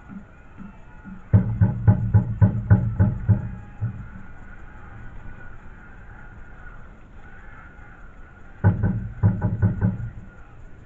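A fan's drum beaten in quick runs of about four to five strokes a second, loud and close: one run of about two and a half seconds starting just over a second in, and a shorter one near the end.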